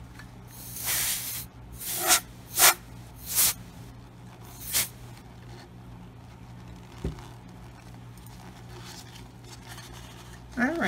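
Five short hissing bursts of air or spray, the first about a second long and the rest brief, spread over the first five seconds. A light knock about seven seconds in.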